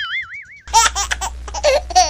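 A short wavering, warbling cartoon-style tone, then, about two-thirds of a second in, an inserted comedy laughter sound effect: high-pitched laughing over a steady low hum that switches on with it.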